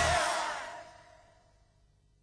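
Pop music with singing, played for a roller-skating routine, dying away over about the first second, then near silence.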